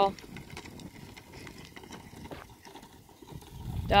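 A horse walking on a sandy dirt arena: quiet, soft hoof falls with a low rustle, and a faint knock a little past halfway.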